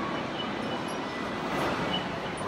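Steady hiss of indoor store background noise, air-handling and general room noise, with no distinct event.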